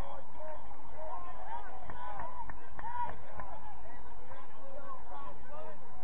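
Distant voices of players and people on the sideline calling out across an open field, many overlapping short shouts, with a few sharp knocks about two to three seconds in.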